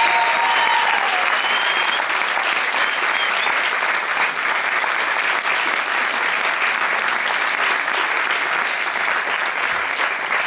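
Audience applauding steadily, with a few brief high cheers over it in the first three seconds.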